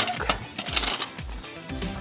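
Background music with a steady beat, a sharp click about every half second.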